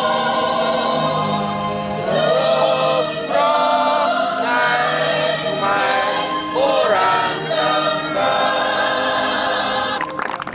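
A national anthem sung by a choir with music, in slow held phrases that end near the end.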